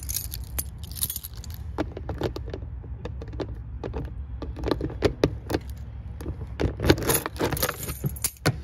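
A bunch of keys jangling while a key unlocks a travel trailer's plastic outdoor-shower hatch, with many small clicks and rattles, bunched about halfway through and near the end, as the hatch is unlocked and swung open.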